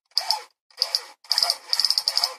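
Toy police gun's sparking trigger mechanism being fired repeatedly: about four short ratcheting bursts, the last a quick run of clicks.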